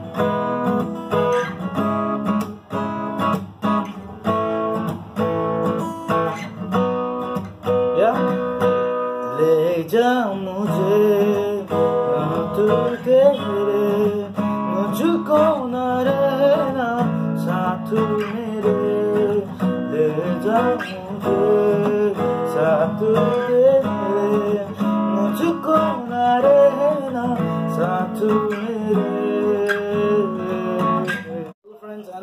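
Steel-string acoustic guitar strummed through a four-chord progression of E, C sharp minor, A and B, with a man's voice singing the melody along with it from about ten seconds in.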